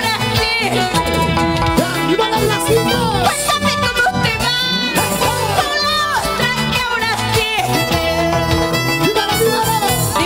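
Live Peruvian huayno band playing: violin melody over Andean harp and electric bass, with a steady beat.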